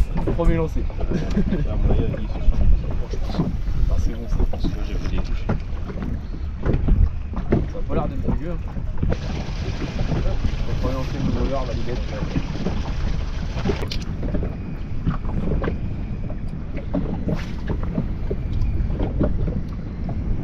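Wind rumbling on the microphone aboard a small inflatable boat at sea, with water moving against the hull. A steadier hiss rises about halfway through and stops about five seconds later.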